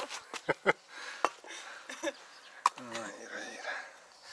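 A person's voice in short wordless bits, with several sharp clicks in the first three seconds and a brief falling voiced sound about three seconds in.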